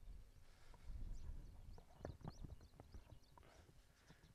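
Faint rustling and light clicks of a plastic carry bag being opened and handled, over a low rumble, with a few faint high chirps.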